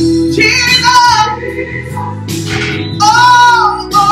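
A woman singing a gospel song in long, sliding held notes over a steady instrumental accompaniment, with the loudest held note near the end.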